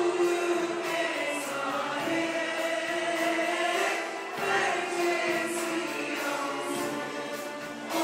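Mixed choir of men and women singing Turkish art music (Türk sanat müziği) in sustained melodic lines, accompanied by a small ensemble of traditional and Western instruments.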